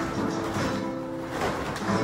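Flamenco music with guitar.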